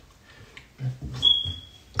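A short, steady high-pitched beep about halfway through a pause, alongside brief low murmured voice sounds.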